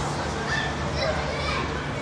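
Children's voices calling out in short high cries across an open plaza, over steady outdoor background noise.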